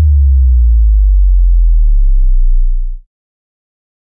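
A single deep sub-bass note from a synthesized sub-bass sample (RSP1_Sub_10) in Caustic 3, struck with a sharp attack, held for about three seconds, then cut off abruptly.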